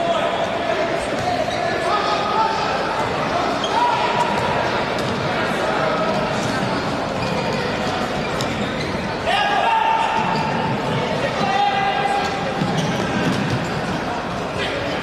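Indoor futsal match heard in a large echoing hall: the ball being played and knocked about on the court, under a constant wash of crowd voices with several held calls or shouts standing out.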